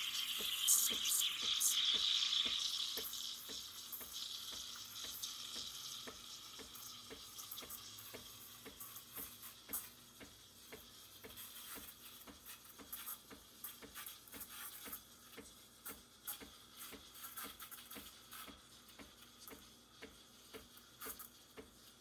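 Breville Barista Express steam wand hissing into a pitcher of milk: a stronger hiss for the first few seconds while air is drawn into the milk, then a quieter hiss as the milk heats. A fast, steady ticking from the machine runs underneath.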